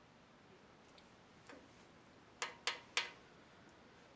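Three quick, sharp clicks about a third of a second apart, a little past halfway through, over a quiet room hush.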